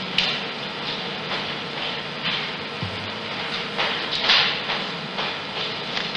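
Steady room noise with several brief rustling swells, the loudest about four seconds in.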